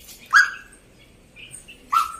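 A bird calling in the foliage: two short, sharp calls, one about a third of a second in and one near the end, with a few faint chirps between them.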